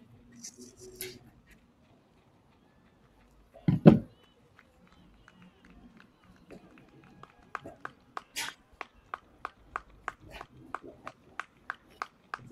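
Sharp claps about four a second through the second half, with one louder burst of sound about four seconds in.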